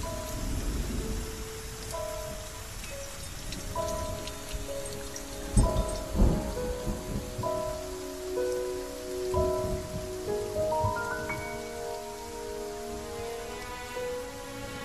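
Steady heavy rain with thunder: a loud thunderclap and rumble about five and a half seconds in. A slow, soft musical score of held notes plays over the rain, growing fuller near the end.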